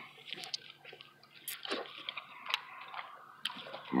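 Quiet, wet, squishy eating sounds with small scattered clicks as a mussel is handled and eaten from a seafood takeout tray.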